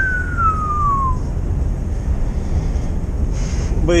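Lorry cab interior noise: the steady low drone of the engine and tyres while driving at road speed. Just after the start a single thin tone slides down in pitch over about a second.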